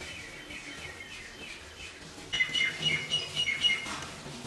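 Small birds chirping in quick runs of short high notes, faint at first and louder in the second half.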